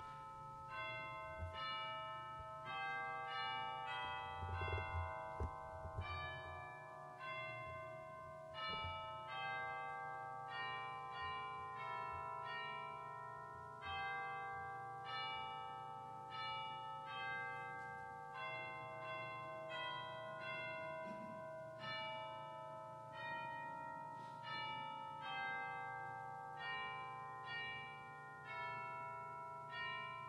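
Bells playing a slow melody, one struck note after another at different pitches, each ringing on under the next.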